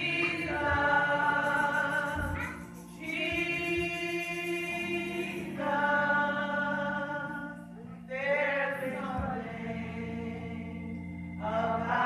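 Gospel praise-and-worship singing by a choir and congregation, in four long phrases of drawn-out held notes with short breaks between them, over a steady low sustained note.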